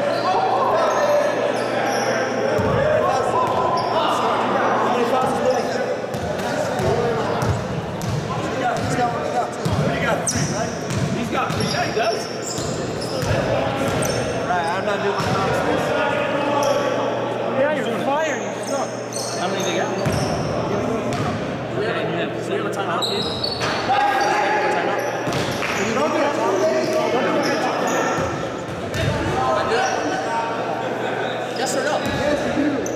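Basketball bouncing on a wooden gym floor, with players' voices calling out, all echoing in a large gymnasium.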